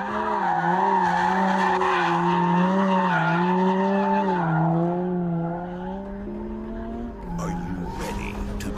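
Aston Martin One-77's V12 engine held high in the revs, its note wavering up and down about once a second, with the tyres squealing as the car powerslides. The engine note eases off and drops near the end.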